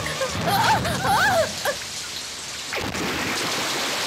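Short, wavering high-pitched cries, then, about three seconds in, a sudden splash into water followed by steady rushing-water noise.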